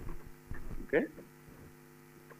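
Steady electrical mains hum, a set of even unchanging tones.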